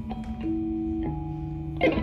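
Live improvised trio of electric guitar, viola and drum kit: held notes that change pitch two or three times, with a sharp strike near the end.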